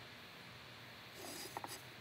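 Faint scratching of a pyrography pen's nichrome wire tip drawn across wood, starting a little over a second in, with a few light ticks.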